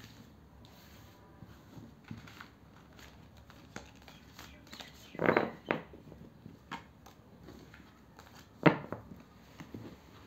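Tarot cards being gathered up from a cloth-covered table: soft sliding and tapping of the cards, with a louder clatter about five seconds in and one sharp tap just before the end.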